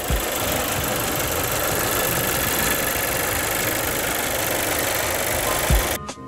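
2018 Volkswagen Tiguan's engine idling steadily, heard with the hood open.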